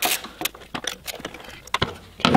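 Irregular light metallic clicks and clinks of a socket wrench and bolts as the boost control solenoid is unbolted and lifted off its mount, with two quick clicks close together near the end.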